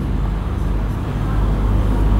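A steady low rumble, like an engine or road traffic, slowly growing a little louder.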